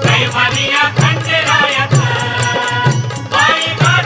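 Marathi Khandoba devotional song (bhaktigeet): a sung melody over a steady percussion beat with a low drum.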